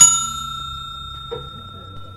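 Bell-ding sound effect of an animated notification-bell subscribe button, a single clear high ring fading slowly.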